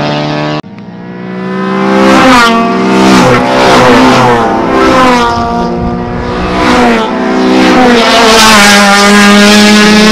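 A Honda Civic's engine accelerating hard down the strip, revving up with its pitch climbing and dropping back at each upshift, several times over. Near the end a steadier engine note holds before another rise.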